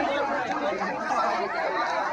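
Crowd chatter: many people talking over one another at once, with no single voice standing out.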